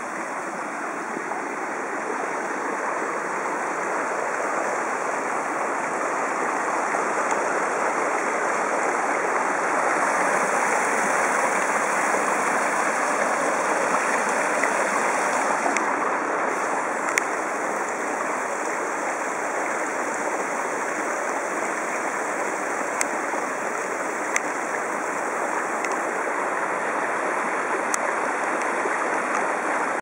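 Small rocky stream running over stones: a steady rushing of water that swells a little about a third of the way in, with a few faint ticks in the second half.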